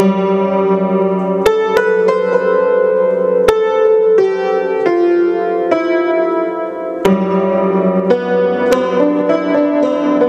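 Russian upright piano being played, a slow original piece centred on G: chords and single notes struck about once a second at an uneven pace, each left ringing into the next.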